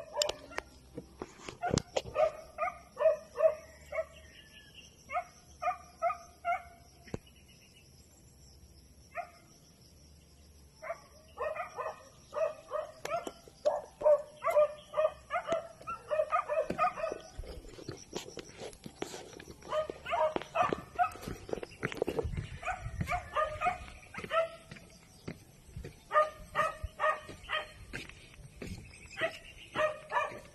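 Repeated short, high yelping calls from an animal, coming in bursts of several at a time with pauses between them.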